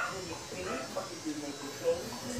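Quiet, indistinct voices in a small room, with no clear words.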